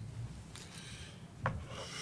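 Soft rubbing or rustling noise, with a single short click about one and a half seconds in.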